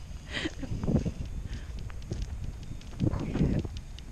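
Footsteps on asphalt, a few irregular scuffs, over a steady low rumble of wind on the microphone.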